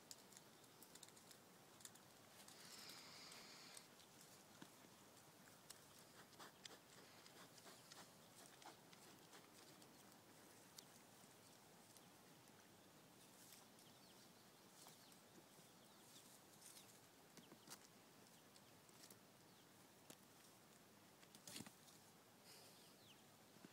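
Near silence broken by faint, scattered ticks and taps: goat kids' hooves scrabbling on a tree stump and the dirt around it, a little busier near the end.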